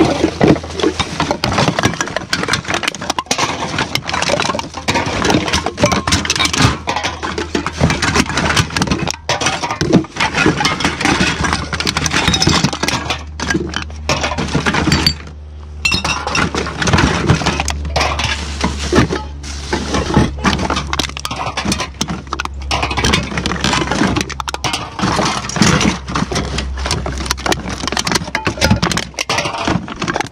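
Aluminum cans, glass and plastic bottles clinking and rattling against each other as they are rummaged through by hand in a plastic recycling bin, in a dense, irregular clatter. A steady low rumble runs underneath.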